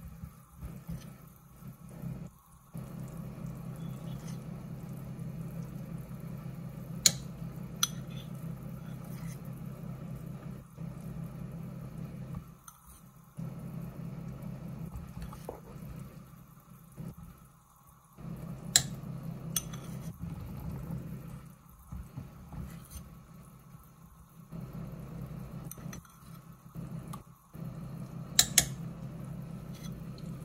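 Chicken and vegetable soup simmering in a stainless steel pot on a gas burner, with a low steady rumble that drops out now and then. A metal spoon clinks sharply against the pot a few times, twice together near the end.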